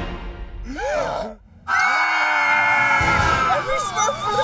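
A man and a high-pitched cartoon voice screaming together in one long held cry, after a short wavering exclamation about a second in. Short, broken yelps follow near the end.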